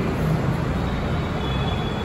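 Steady background noise with a low rumble and hiss, even throughout, with no distinct event standing out.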